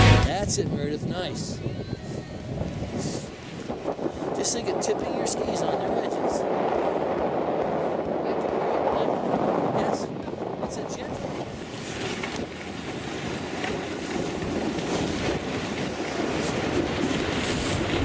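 Wind buffeting the microphone of a camera carried by a moving skier, a loud uneven rush that dips a little about three seconds in and again around twelve seconds, with short scraping sounds from skis on the groomed snow.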